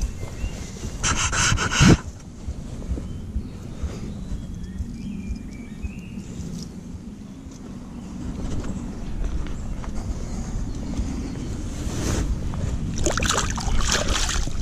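Handling and rustling noise on a body-worn action camera as a caught pike is held and moved by hand over grass, with a loud scraping rustle about a second and a half in and more rustling near the end, over a low steady rumble.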